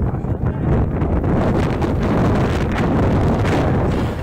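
Wind buffeting an outdoor camera microphone: a loud, steady low rumble.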